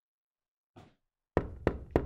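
Three sharp knocks on a door, evenly spaced about a third of a second apart, starting a little past halfway, each with a deep resonant thud, and the ring fading after the last.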